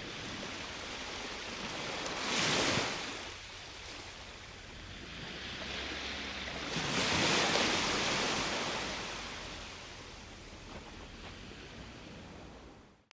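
Ocean waves washing onto a shore, swelling twice, briefly about two and a half seconds in and longer around seven to eight seconds, then easing off.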